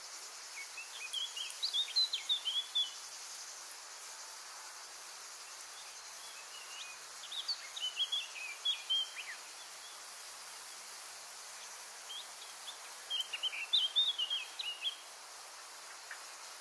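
A bird singing three short phrases, about six seconds apart, over a steady faint high hiss.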